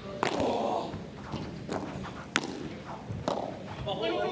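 Padel rally: a padel ball struck by rackets and bouncing on the court, several sharp hits about a second apart, the loudest a little past halfway.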